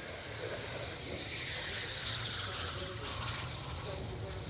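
Eurofighter Typhoon's twin EJ200 turbofan engines at landing power on final approach, the jet rushing past with a whine that falls in pitch from about a second in. Faint air-traffic radio chatter is heard underneath.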